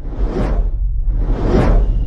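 Two cinematic whoosh sound effects, each swelling and fading, about a second apart, over a low rumbling drone.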